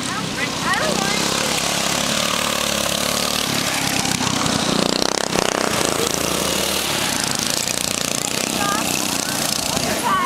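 Go-kart's small petrol engine running at speed around a dirt track. It gets louder as the kart passes close about five seconds in.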